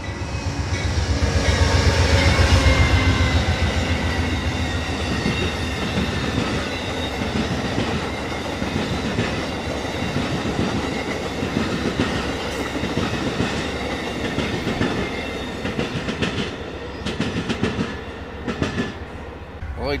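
Amtrak Northeast Regional passenger train passing close by behind a GE Genesis diesel locomotive. The locomotive's engine is loudest about two to three seconds in, then the passenger cars' wheels run by with a steady clickety-clack that thins out near the end.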